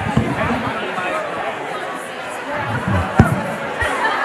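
Many people talking at once in a large hall: a crowd's overlapping chatter. A sharp thump comes about three seconds in, and a softer one follows just before the end.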